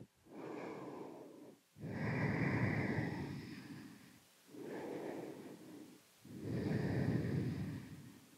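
A woman breathing deeply and audibly while holding a yoga pose: four long breaths, in and out, the second and fourth louder.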